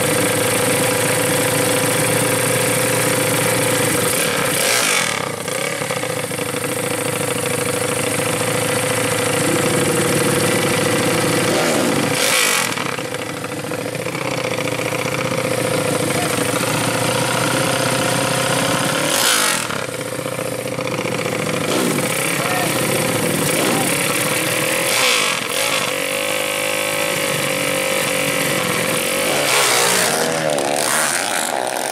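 Modified four-stroke 120cc underbone motorcycle engine idling through an open aftermarket exhaust, revved now and then.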